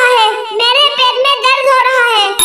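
A high-pitched cartoon character's voice in long, drawn-out vocalizing, the pitch wavering up and down, with a brief break about half a second in.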